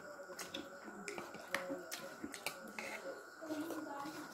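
Close-up eating sounds from people eating with their hands: irregular sharp wet clicks and smacks of lips and fingers in food, about two or three a second, with faint voices underneath.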